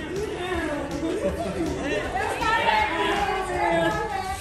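Several people talking over one another, the chatter getting louder in the second half.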